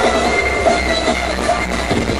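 Loud electronic club music from a DJ set: high, held synth tones over a steady deep bass, with the bass dropping out at the end.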